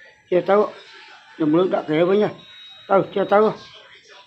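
A person's voice making three short vocal sounds with no clear words, the middle one the longest.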